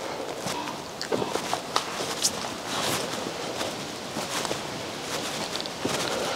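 Footsteps over a floor littered with sticks, leaves and rubble, with scattered sharp snaps and cracks underfoot.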